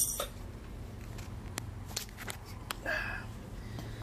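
A black plastic fuse holder for a 250 A MEGA fuse being handled and pried open: a sharp knock at the start, then several small plastic clicks and a short scrape about three seconds in.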